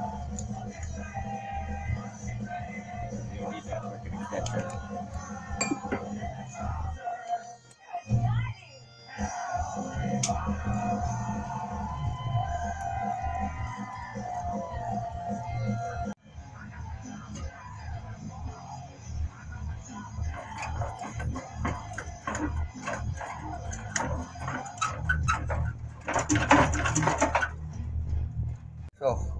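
Music with a steady beat and a singing voice plays throughout. Hand tools clink against metal now and then, with a dense run of clicks near the end.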